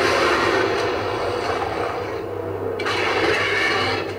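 A film's dinosaur fight sound effects playing loudly from an LED TV's speakers: a dense, noisy rush of sound. It thins out briefly about two and a half seconds in.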